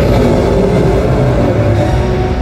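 Large stage flame effects firing, a loud low rumble of burning gas, over show music with held tones.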